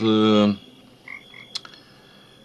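A man's drawn-out hesitation sound, "eh", held at one flat pitch for about half a second. Then it goes quiet, with a faint click about a second and a half in.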